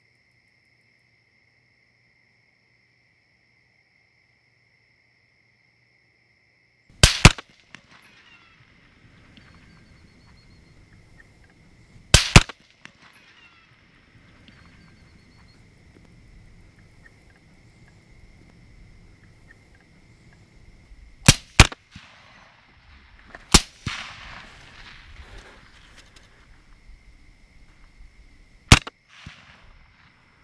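Rifle shots at feral hogs at night: seven sharp, loud cracks in five groups, the first a quick pair about seven seconds in, then a single, another quick pair, and two more singles, the last near the end. Between the shots, crickets chirr steadily at a high pitch.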